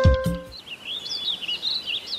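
The last note of an upbeat intro jingle dies away in the first half second, then small birds chirp and twitter in quick, high, repeated calls over faint background noise.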